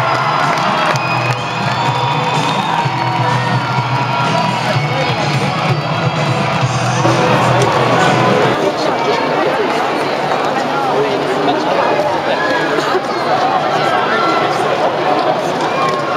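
Spectators and players shouting and cheering at a rugby match: a thin, echoing crowd of many overlapping voices, with a steady low hum underneath that drops out about halfway through.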